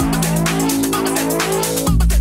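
House/techno DJ mix in a short breakdown: the kick drum and bass drop out, leaving sustained synth chords and high percussion. The full beat comes back just before the end.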